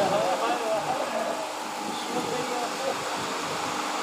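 A man's chanted recitation heard through loudspeakers, the end of a phrase dying away in the first second. Then a steady background noise fills the pause.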